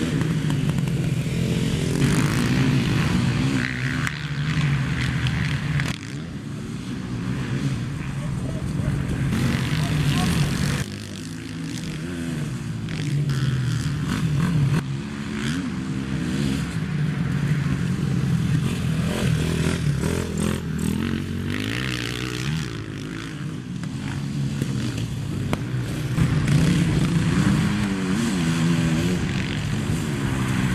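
Several race quads (sport ATVs) on a dirt motocross track, their engines revving up and down in pitch as riders accelerate and let off through the corners. The loudness jumps abruptly several times as one pass gives way to another.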